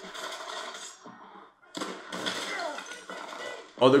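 War-film battle soundtrack: a soldier shouting over a steady wash of noise, with a brief dip about a second and a half in.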